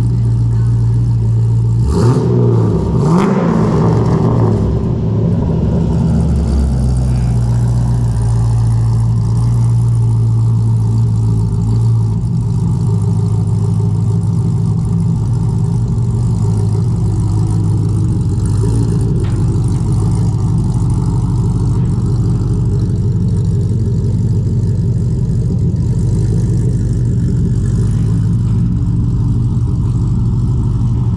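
C6 Corvette V8 running through a custom full 3-inch exhaust: a brief rev about two seconds in, then a steady, low idle.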